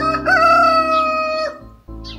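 A rooster crowing once: one call about a second and a half long that rises at the start, then holds and breaks off. Soft background music runs under it and fades out as the crow ends.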